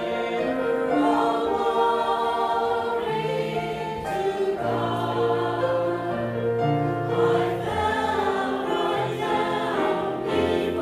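Small mixed church choir of men's and women's voices singing in sustained, continuous phrases, accompanied by grand piano.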